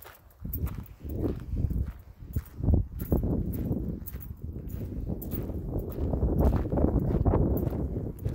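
Footsteps of a person walking outdoors, with irregular clicks over a low, uneven rumble on the handheld phone's microphone that grows louder after the first moment.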